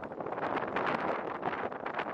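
Strong gusty wind blowing across the microphone: a rough, uneven rushing noise that surges and drops from moment to moment.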